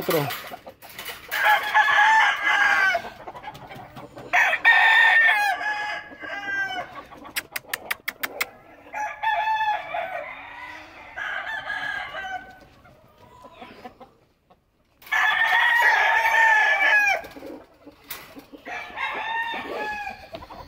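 Gamecock roosters crowing again and again, about six long crows of one and a half to two seconds each, some overlapping or close together. A quick run of sharp clicks comes around the middle.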